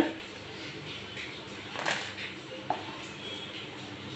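Dried red chillies frying in oil in a pan, giving a faint steady sizzle, with a light scrape of a wooden spatula about two seconds in.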